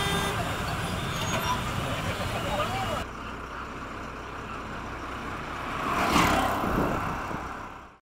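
Busy street traffic heard from a moving scooter. After an abrupt cut about three seconds in, an auto-rickshaw's small engine runs as it comes along the road, swelling to its loudest as it passes close about six seconds in, then fading out at the end.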